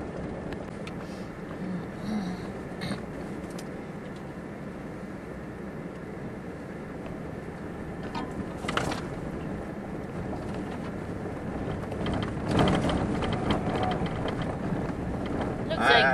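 Pickup truck driving slowly on a gravel forest road, heard from inside the cab: a steady rumble of engine and tyres on gravel with scattered knocks. Louder rough patches come about nine and thirteen seconds in.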